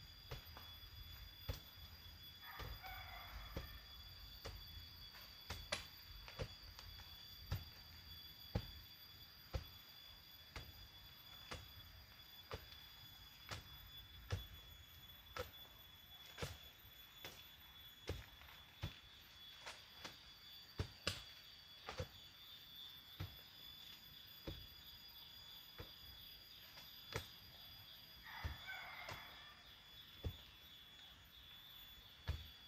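Faint, repeated thunks of a hand tool striking soil while a planting hole is dug, roughly one stroke a second. A short call is heard twice, once near the start and once near the end.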